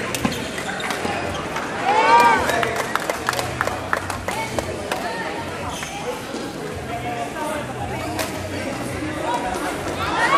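Badminton doubles rally: sharp clicks of rackets striking the shuttlecock and players' footwork on the court, amid voices in the hall, with a loud call about two seconds in.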